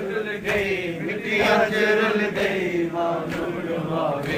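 A crowd of men chanting a Punjabi noha together, their voices rising and falling continuously. Faint regular slaps, about one a second, can be heard under the voices: the beat of matam, hands striking bare chests in time with the lament.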